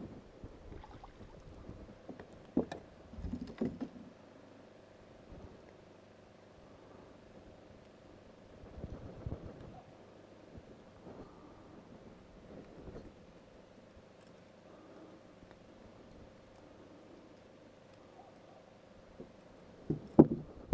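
Faint steady hum on a fishing boat, with scattered knocks and rattles from handling the rod, reel and a landed bass, the loudest coming a few seconds in and around the middle.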